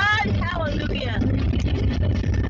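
Steady low road and engine rumble inside a moving car's cabin, with a voice sliding in pitch during the first second.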